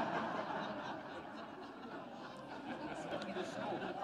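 A congregation laughing and murmuring at a joke, a diffuse spread-out sound of many people with no single clear voice, easing off in the middle and picking up again near the end.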